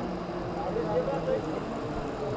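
A water tanker truck's engine running steadily as it drives along the road, with people's voices talking over it.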